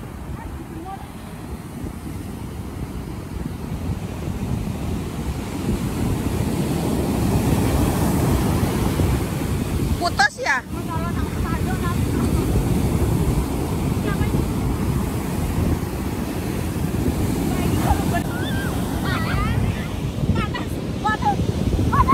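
Ocean surf breaking and washing up the beach, with wind buffeting the microphone. The rush grows louder over the first several seconds, with a brief break about ten seconds in.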